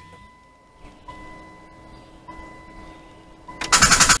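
Intro title sound effect: a steady high electronic tone pulsing softly about once a second, with a lower tone joining about a second in, then a loud rushing burst of noise near the end.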